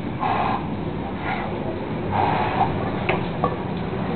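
A man straining under a heavy barbell during a push press, letting out three drawn-out grunts, the last and loudest about two seconds in.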